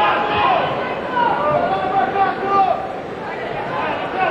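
A man talking, with arena crowd noise behind.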